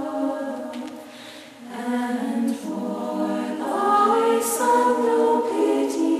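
Choir of nuns singing a hymn in harmony, women's voices holding sustained notes. The phrase fades about a second in and the singing comes back in just before the two-second mark, then swells fuller.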